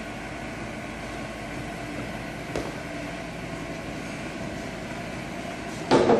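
Steady machine hum with a single short knock about two and a half seconds in.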